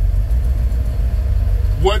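Steady low rumble of a vehicle, heard from inside its soft-topped cab. A man's voice begins a word near the end.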